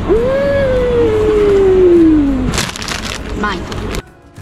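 A person's voice holding one long wordless note for about two and a half seconds, rising at first and then slowly falling in pitch. About a second of rustling noise follows near the end.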